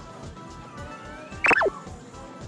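Background music with a steady beat. About one and a half seconds in, a short, loud sound effect cuts in: two quick notes gliding steeply down in pitch.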